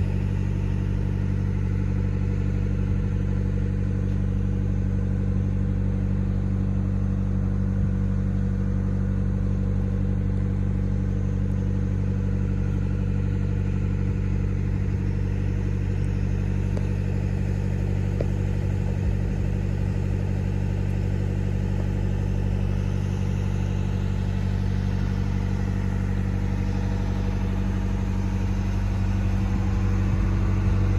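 A tugboat's diesel engine running steadily while underway: an even, low drone that holds unchanged throughout.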